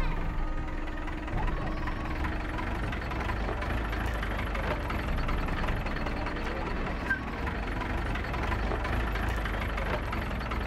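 A light goods truck's engine running steadily as the truck drives slowly off over rough ground, a low, even engine sound.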